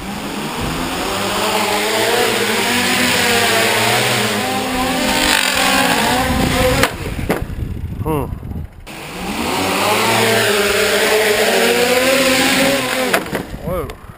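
Quadcopter's electric motors and propellers, running inside a foam Hiller-platform duct, spinning up from a slow start and whirring with a pitch that wavers up and down for about seven seconds. The sound drops away, then spins up again for about four more seconds and cuts out near the end. The hunting pitch goes with an unstable craft, which the builders traced to a loose gyro wire.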